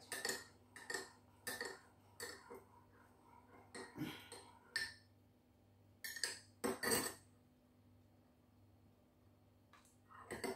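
Metal teaspoon clinking and scraping against a spice jar and a ceramic mug as ground ginger is spooned into tea and stirred. Light, irregular clinks through the first five seconds, then two louder clinks about six and seven seconds in.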